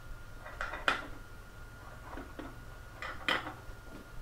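A handful of faint, light metal clicks and clinks, the loudest about a second in, as a metal coupling nut is hand-threaded onto a quarter-inch machine screw with washers through a plastic belt clip.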